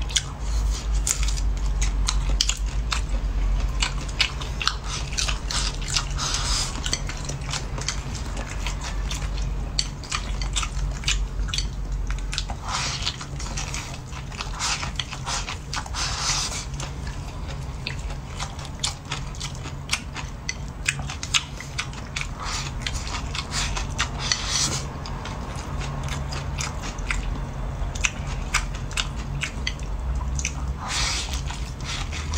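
Close-miked chewing and biting of a stir-fry of greens and shrimp with rice: a dense, irregular run of crunches, clicks and wet mouth sounds, over a steady low hum.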